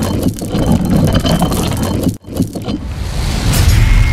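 Cinematic logo-reveal sound effects: a dense rumbling, scraping noise that cuts out suddenly for a moment about two seconds in, then a rising whoosh that builds into the reveal near the end.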